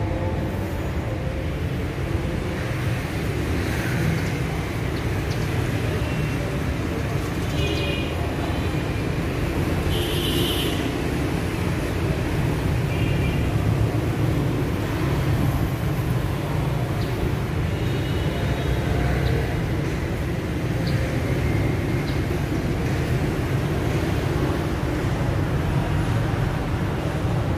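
Steady city street traffic, mostly a low rumble of engines, with a few short high-pitched beeps scattered through it.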